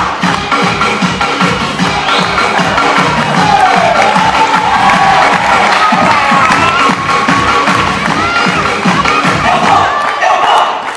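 Loud backing music with a steady beat, with an audience cheering and children shouting over it from a few seconds in.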